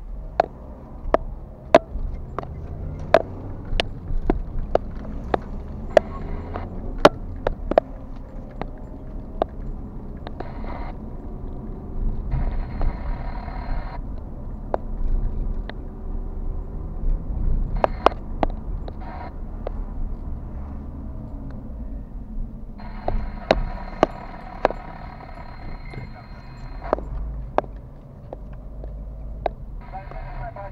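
Car driving noise heard from inside the cabin: a steady low road and engine rumble. Sharp, evenly spaced ticks come about every 0.7 s over the first several seconds, and again in the last few seconds.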